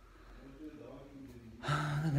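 A man's voice, low and quiet at first, then speaking loudly from near the end.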